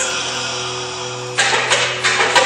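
Indoor percussion ensemble music: a steady held chord, then about one and a half seconds in a sudden entry of sharp percussion hits.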